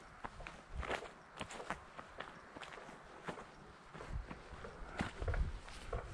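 Footsteps of a person walking on a dirt and gravel track, about two steps a second.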